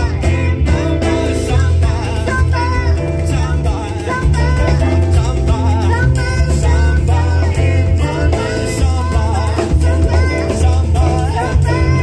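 Live band playing a samba-style song: acoustic guitar, electric bass and drum kit under a sung melody, with keyboard.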